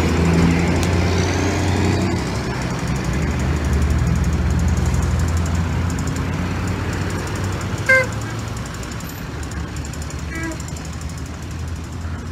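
Road traffic at a busy intersection: vehicle engines running and idling in a steady low rumble. A short pitched beep about eight seconds in, and a fainter one about two seconds later.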